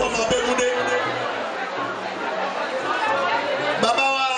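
A man's voice amplified through a PA system, with crowd chatter mixed in.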